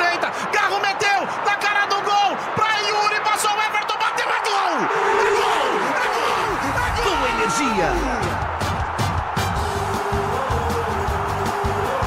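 Radio football commentator narrating a counter-attack at speed, then breaking into long drawn-out shouts as the goal goes in, with music coming in behind from about seven seconds in.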